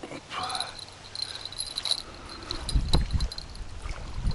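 Small metal bite-alarm bell on a ledger rod tinkling with a high, thin ring as it is handled and clipped on, with a low rumble about three seconds in.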